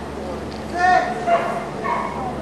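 Border collie giving three short, high-pitched yipping barks in quick succession while running an agility course, excited barking at full speed.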